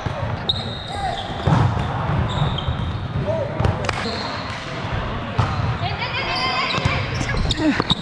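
A volleyball being played in a large, echoing gym: several sharp smacks of hands on the ball and the ball striking the court, spread through the rally, among players' shouts and chatter.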